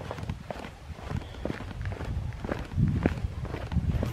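Footsteps of a hiker walking over a bare granite slab: irregular footfalls, scuffs and taps on the rock with low thuds.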